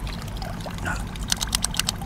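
Water trickling and dripping, with a quick run of light clicks in the second half.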